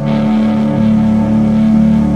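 Live rock band playing, with electric guitar and bass holding long sustained chords that swell in loudly at the start.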